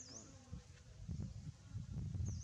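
A flying insect buzzing close to the microphone, growing louder about halfway through.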